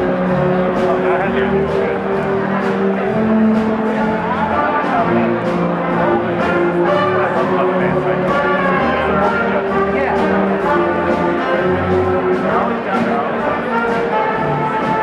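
A student jazz big band playing: saxophones, trumpets and trombones in sustained ensemble lines over upright bass and drums, with regular cymbal strokes keeping the beat, in a large reverberant hall.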